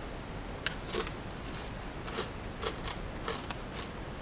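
Pork rinds crunching while being chewed: an irregular run of sharp crackles.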